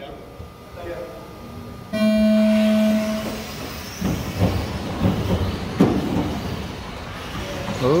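An electronic start tone from the race timing system sounds steadily for about a second and a half, signalling the start of the race. Then 2WD electric RC buggies with brushless motors run on the track, a rough uneven noise that surges irregularly.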